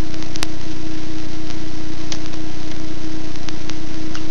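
Loud, steady background hiss and hum with one constant tone running through it, and a few faint clicks.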